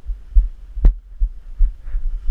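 Deep thumps about every half second from movement jolting a body-worn action camera as the wearer walks and reaches, with one sharp click a little under halfway through.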